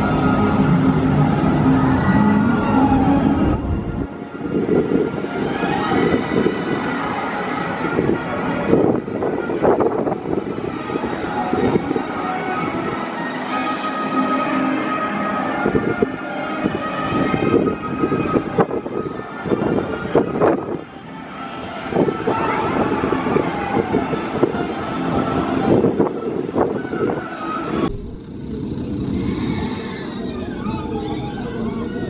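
Steel roller coaster train (Intamin launch coaster) running along its steel track: a loud rolling roar with rattling and a high wheel whine. It changes abruptly about four seconds in and drops back near the end.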